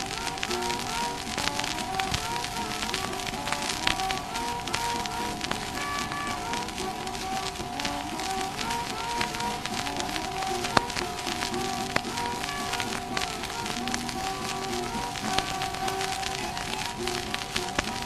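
Instrumental passage of a 1924 acoustically recorded 78 rpm country-blues side: guitar with rack harmonica playing, one high note held while short bent notes sound above it. Steady record-surface crackle and hiss run under the music.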